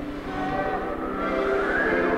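Steady held tones sounding together like a sustained chord, with one tone gliding upward in the second half.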